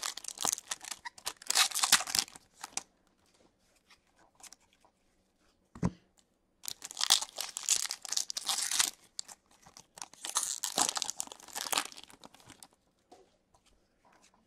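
Foil hockey card pack wrappers from an Upper Deck Series 1 blaster being torn open and crinkled, in three spells of tearing and rustling. A single dull knock comes about six seconds in.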